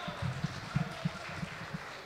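Dull, low thuds at roughly four a second, footsteps on the stage carried through the microphone stands as a man walks away from them, over a faint murmur of the hall.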